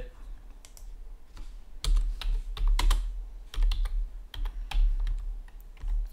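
Typing on a computer keyboard: irregular runs of key clicks, starting about two seconds in, with dull low thuds under the louder strokes.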